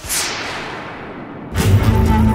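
Editing sound effect: a whoosh that falls in pitch over about a second and a half, then a sudden loud hit as background music comes in.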